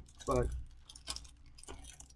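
Clear plastic bag of injection-moulded model-kit sprues rustling as it is handled, with the plastic parts clicking against one another in scattered small clicks.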